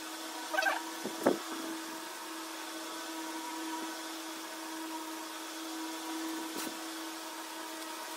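A steady machine hum with one low tone runs throughout. Over it come a few brief handling sounds from a plant pot and newspaper, a short squeak and a sharp knock in the first second and a half, and a small click near the end.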